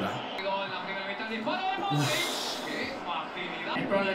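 A man's breathy exhaled "uf" about two seconds in, a sigh of relief, amid faint, quiet talk.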